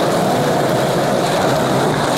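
Skateboard wheels rolling steadily over smooth concrete, a constant rolling roar with no pops or landings.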